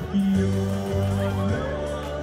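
A man singing a serenade into a microphone over backing music, through a stage sound system.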